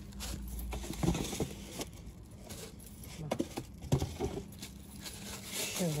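A teakettle in a plastic bag being handled out of a cardboard box: a few light knocks and clicks of the kettle and box, with the plastic wrapping rustling.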